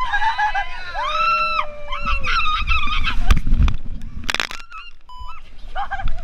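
A woman screaming on a tube waterslide ride: long high held screams as the tube sets off, then shorter cries, with a brief loud rush of noise about four seconds in.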